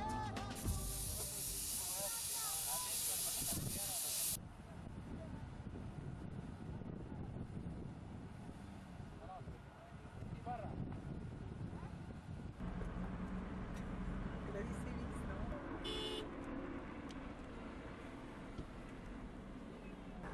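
A 4x4's engine running with a steady low rumble, with faint voices over it. A loud hiss fills the first few seconds and cuts off abruptly.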